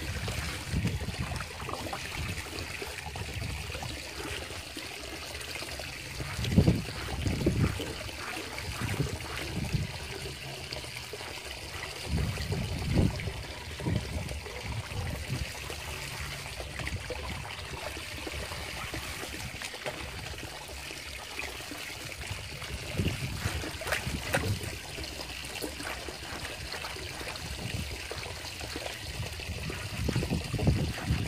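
Water poured from a plastic bowl trickling and splashing over a mesh sack of cooked corn kernels in a concrete washtub, with hands rubbing the grains through the mesh to wash off their skins. A few louder bumps and splashes break in, the strongest about six seconds in.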